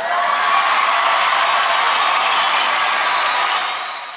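Audience applauding and cheering, starting to fade near the end.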